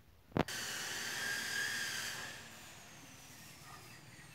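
A sharp click, then a steady high whine with hiss that starts suddenly and eases to a fainter hiss after about two seconds, while a faint high tone slowly falls in pitch.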